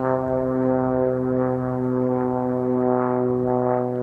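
Single-engine propeller airplane droning steadily overhead, one even-pitched hum with many overtones; taken for a Cessna 185 or 206.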